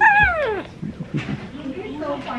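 A baby's short high-pitched squeal that falls steeply in pitch over about half a second, followed by softer vocal sounds.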